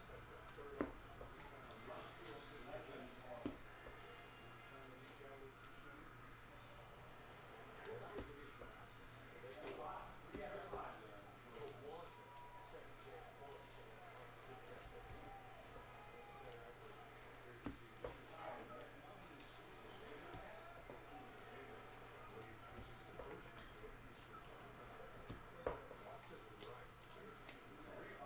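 Quiet handling of trading cards on a table: faint rustling and scraping as cards are slid and stacked, with a few sharp clicks, over a low steady hum.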